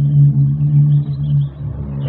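A loud, steady low hum with fainter overtones above it, dipping briefly about one and a half seconds in.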